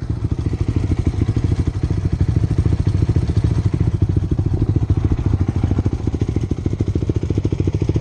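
Honda dirt bike's single-cylinder engine idling steadily close to the microphone, a fast even run of firing pulses.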